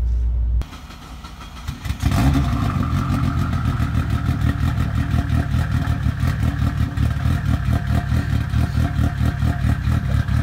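Dodge SRT-4 Neon race car's turbocharged four-cylinder engine idling loudly with a rapid, even pulse, heard from about two seconds in.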